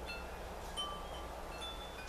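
Chimes ringing in the background: a few scattered high notes at different pitches, over a steady low hum.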